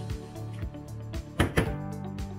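Background music, with two sharp clacks close together about one and a half seconds in: the LED torch's magnet snapping onto a metal surface.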